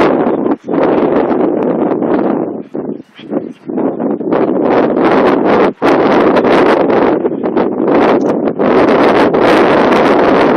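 Wind buffeting the microphone, loud and gusty, with a few brief sudden lulls.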